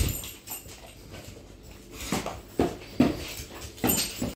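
Two yellow Labradors released to their food, with a few short, sudden dog sounds about half a second apart in the second half.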